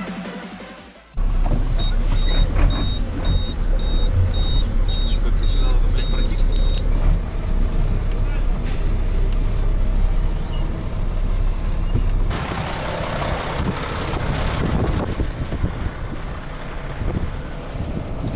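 Tow truck engine running, heard from inside the cab as a loud, steady low rumble, with a reversing alarm beeping about twice a second for the first few seconds. About twelve seconds in the rumble stops and a hiss of outdoor noise takes over.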